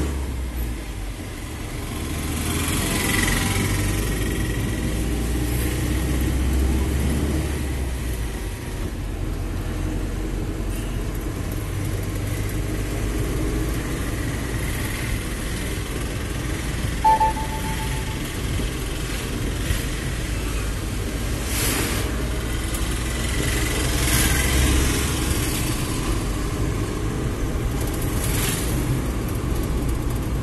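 Diesel engine and road noise heard from inside the cab of a Mahindra Bolero pickup on the move, a low steady rumble that swells and eases with the throttle. A short high beep sounds about halfway through, and passing traffic adds a few brief rushes near the end.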